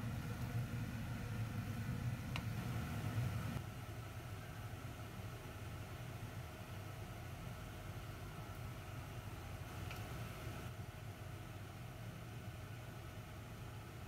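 A steady low kitchen hum that drops a little in level about three and a half seconds in, with a couple of faint utensil clicks against the pan.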